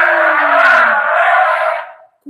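Elephant trumpeting: one loud, harsh call that fades out near the end.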